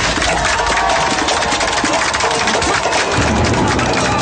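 Crowd cheering and shouting around a fight, layered with a film's background score that has a fast, dense beat.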